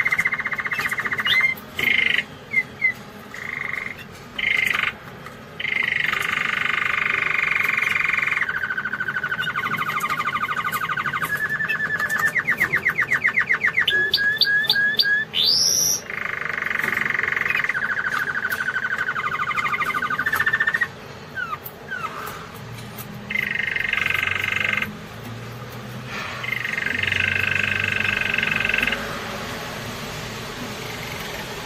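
Domestic canary singing in long rolling phrases, with a fast trill of about ten notes a second and a sharp rising whistle about fifteen seconds in; the song breaks off for short pauses between phrases.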